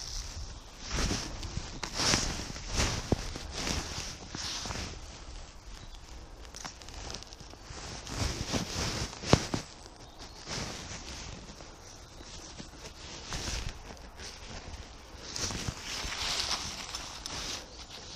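Footsteps and rustling on dry woodland leaf litter as a person moves about and handles a pitched tent, in irregular bursts with short clicks and knocks, one sharper click about halfway through.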